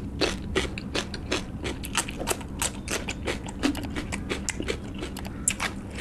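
Close-miked crunching of raw cucumber being bitten and chewed: a steady run of crisp crunches, about three a second.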